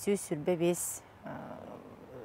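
A woman speaking in Yakut for about the first second, then a short, noisy, breathy stretch without clear words.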